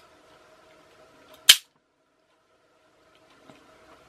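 A single loud, sharp plastic snap about one and a half seconds in as the plastic gearbox casing of a TOMY clockwork toy motor pops apart, with a faint click near the end.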